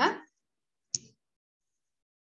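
A single short, sharp computer mouse click about a second in.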